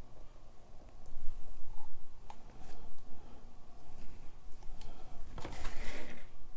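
A steady low hum with a few faint clicks, then a short rustling scrape near the end as hands take hold of the square painted canvas panel on the cardboard-covered table.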